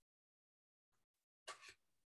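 Near silence, broken near the end by a short, faint intake of breath.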